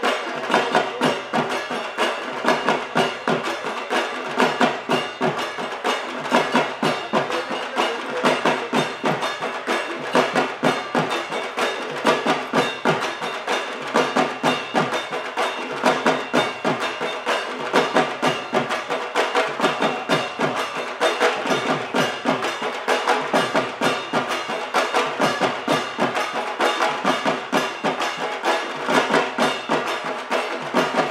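Dhak, large Bengali barrel drums beaten with sticks, playing a fast, steady driving rhythm of many sharp strokes a second.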